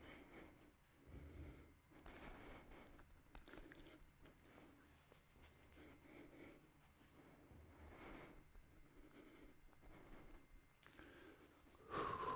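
Near silence: quiet room tone with faint soft rustles and a few quiet taps.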